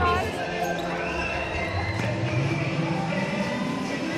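Indoor sports-hall ambience of a netball game: crowd voices echoing in the large hall, with court sounds of the players and the ball.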